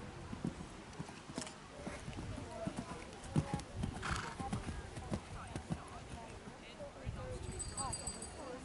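Hoofbeats of a horse cantering on grass turf: a run of dull thuds in an uneven rhythm.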